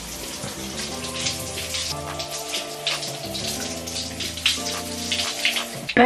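Shower spray splashing onto wet hair as conditioner is rinsed out, an irregular patter of water, over background music with sustained chords.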